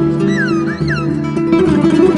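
Nylon-string classical guitar playing a flamenco-style piece, with a high sliding melodic line gliding up and down above it in the first second.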